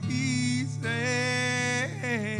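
A man singing to his own acoustic guitar: a short sung note, then a long held note lasting about a second, over steadily strummed chords.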